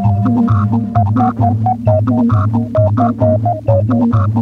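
Rhythmic electronic music built on a tape-loop rhythm: a steady repeating low pulse, about three a second, under short organ-like notes hopping between a few pitches. A long held note dies away in the first second.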